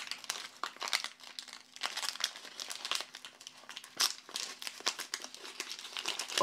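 A small kraft-paper bag crinkled and pulled open by hand: an irregular run of paper crackles and rustles.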